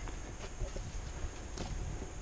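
A few light knocks and taps, irregularly spaced, over a steady low rumble.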